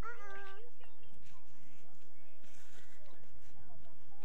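A young child's high, sing-song 'uh-oh' call just at the start, drawn out and wavering in pitch, followed by fainter scattered voices.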